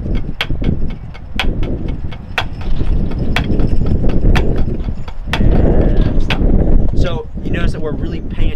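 Drumsticks on a rubber practice pad playing an accent-tap exercise, two players together: a strong accent about once a second with lighter taps between, the first tap after each accent played as a buzz stroke. The playing stops near the end.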